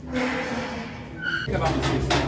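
Voices, then a single short high-pitched beep about a second and a quarter in. A steady low hum starts about halfway through.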